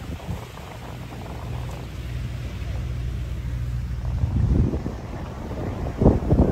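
Speedboat outboard engines running near the shore: a steady low drone that grows gradually louder, with a rougher, louder stretch about four seconds in. Wind buffets the microphone.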